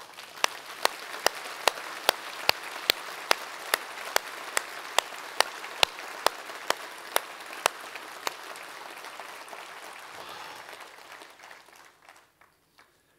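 A congregation applauding, with one person's steady, rhythmic claps close to the microphone standing out at about two and a half claps a second for the first seven or eight seconds. The applause then dies away near the end.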